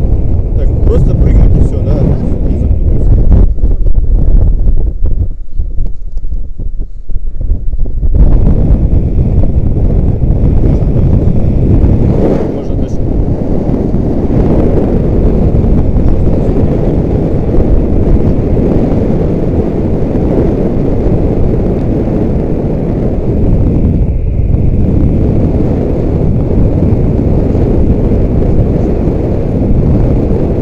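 Wind buffeting an action camera's microphone: a loud low rumble, gusty and uneven for the first several seconds, then steady.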